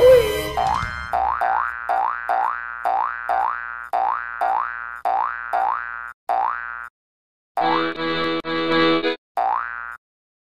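Cartoon-style logo jingle: a quick rising 'boing' sound effect repeated about twice a second for several seconds. After a short break come a few chord hits, then one more boing at the end.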